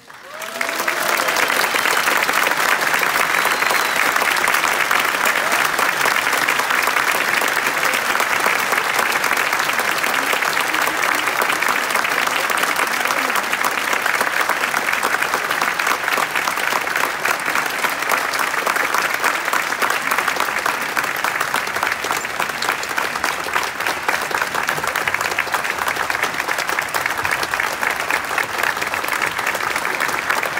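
Concert hall audience applauding as the last chord of the piece dies away. The clapping starts about half a second in and stays full and steady throughout.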